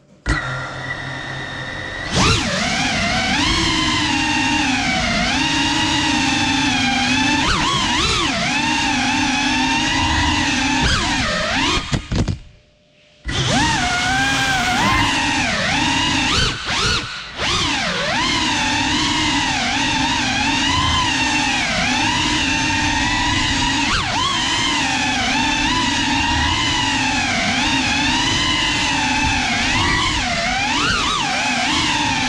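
Geprc Cinelog 35 cinewhoop's brushless motors and ducted propellers whining, the pitch rising and falling constantly with the throttle. It holds a steadier tone for the first two seconds, and the sound drops away for about a second near the middle before picking up again.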